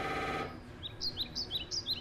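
A half-second burst of rapid pulsing electronic buzz from an MRI scanner, cutting off abruptly. Then a small songbird gives a quick run of about eight short high chirps.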